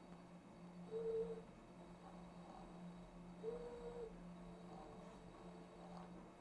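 Faint, brief whines from ODrive-driven brushless motors of a robot arm's shoulder joint moving under joystick control, twice, about a second in and again at about three and a half seconds, over a steady low hum.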